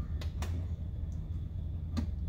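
Steady low hum of shop room tone, with a few light clicks about a quarter and half a second in and again near the end as the plastic mud flap is shifted on its loosely started screws.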